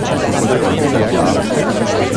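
Dense babble of many voices talking over one another at once, steady and loud, with no words standing out.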